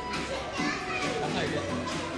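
Mixed voices of a small group, a child's voice among them, over background music.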